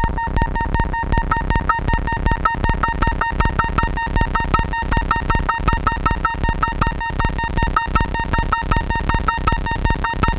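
Erica Synths Pico System III modular synthesizer playing a sequenced rhythm built from the delay and noise modules: a fast, dense run of clicking pulses over a steady high drone, with short pitched blips scattered through it.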